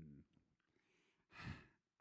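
A man's short 'hmm' trailing off, then a brief breathy sigh into a handheld microphone about a second and a half in, with near silence around it.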